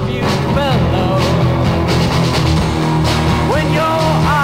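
A 1960s garage rock record playing: a full band with a steady low end, drum hits and a bending melodic lead line.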